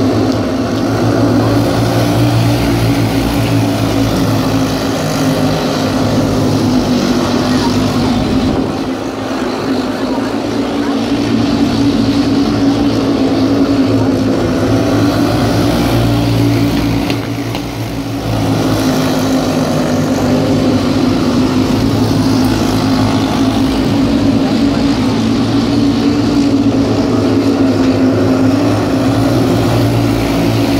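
A pack of junior sprint cars racing on a dirt oval, their engines running together in a loud, steady drone. The drone eases briefly twice, about a third of the way through and again a little past halfway, as the cars move around the track.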